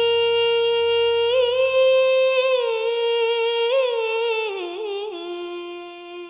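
A woman's solo voice humming long held notes without words, a cappella, gliding between a few pitches and fading out near the end.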